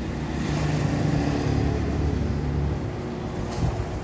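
Sewing machine running steadily as it stitches fabric, a low motor hum that eases off about three seconds in, with a brief knock shortly after.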